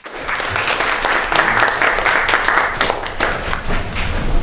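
Audience applauding, many hands clapping at once, swelling quickly within the first half second.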